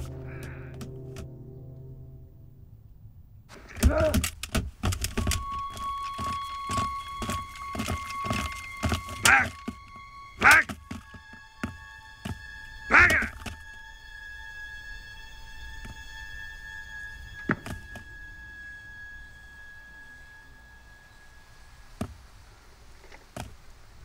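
Film soundtrack: a run of heavy thuds between about 4 and 14 seconds, with several loud vocal cries among them, over music of long held notes. After about 14 seconds only the held music tones remain, with one more sharp knock at about 17 seconds.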